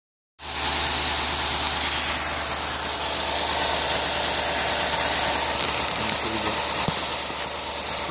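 V8 car engine idling steadily, with a constant low hum and a hiss of belts and accessories.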